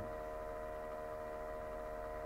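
A steady electrical hum with several fixed pitches layered together, unchanging throughout.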